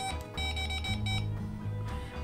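Handheld EMF meter's small speaker beeping as it is switched on and calibrates: a brief tone, then a quick run of short, same-pitched electronic beeps lasting about a second.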